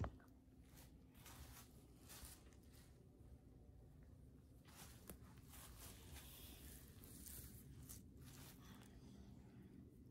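Near silence: faint room tone with soft, scattered rustles and light handling taps as a handheld phone camera is moved.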